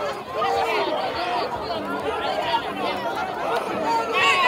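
Crowd chatter in football stadium stands: many overlapping voices talking and calling out, with no single clear speaker.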